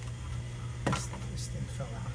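Small water cooler's refrigeration compressor running with a steady low hum, its thermostat bypassed so it runs continuously to chill the tank water. A single sharp knock about a second in.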